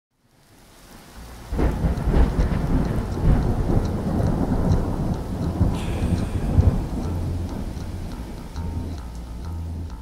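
Thunderstorm: steady rain with rolling thunder, fading in at first, then a sudden loud thunderclap about a second and a half in, followed by continued rumbling.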